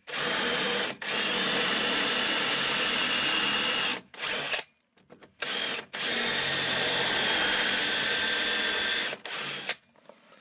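Cordless DeWalt drill boring into wood through a 3D-printed drill guide: a steady run of about four seconds, a few short blips of the trigger, then another steady run of about three seconds.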